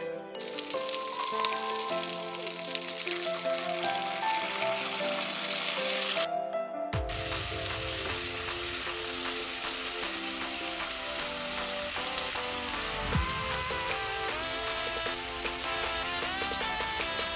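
Tofu cubes, chilies and onion sizzling in hot oil in a wok, a steady crackling hiss under background music. The sizzle breaks off briefly about six seconds in, then carries on.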